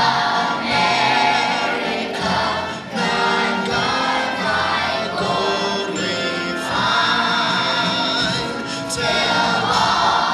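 Children's choir of elementary school pupils singing a song together, the phrases broken by brief dips in loudness about three and nine seconds in.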